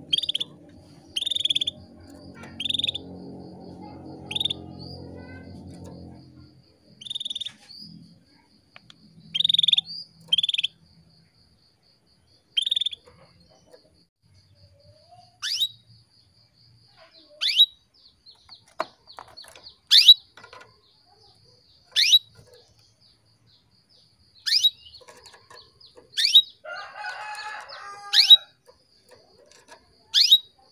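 Female canary calling: short chirps about every second and a half, then sharp downward-slurred call notes every couple of seconds. These are the female calls used to stir male canaries into breeding condition and singing. A low hum sounds under the first six seconds.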